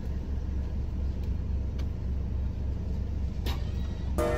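Low, steady rumble of a car's idling engine heard from inside the cabin, with a few faint clicks.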